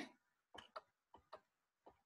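Near silence with a handful of faint, irregular clicks as a word is handwritten on screen with a pen input device.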